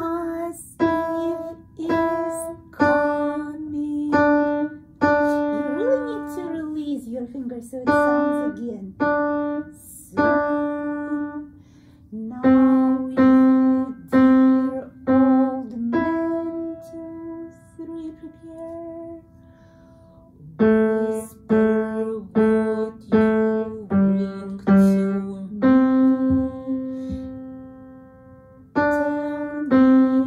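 Acoustic upright piano played by a beginner: a simple, slow melody of separate single notes, some held and left to fade, with a quieter lull partway through before the notes resume.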